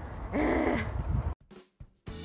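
A woman's short voiced sigh about half a second in, over a low steady rumble. The sound then cuts out abruptly to near silence.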